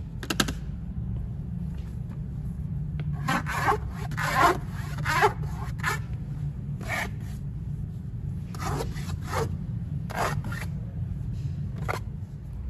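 Fingertips scratching and rubbing the plastic decks of children's kick scooters in a series of short scratchy strokes, in clusters with gaps between, over a steady low hum.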